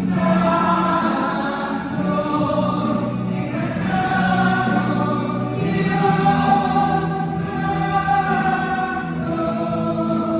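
Worship music with a group of voices singing long held notes over a steady accompaniment.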